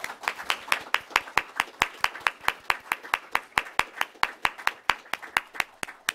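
Audience applause, with sharp, evenly spaced claps at about four to five a second standing out over the general clapping.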